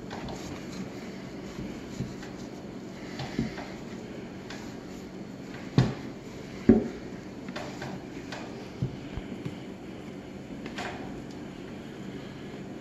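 Hands pressing rigidized ceramic fiber blanket into a sheet-steel forge box, with rubbing and handling noise and a few knocks against the metal. The two loudest knocks come about six and seven seconds in.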